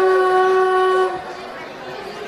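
A girl singing solo into a microphone, holding one long, steady note of a hadroh song that stops about a second in.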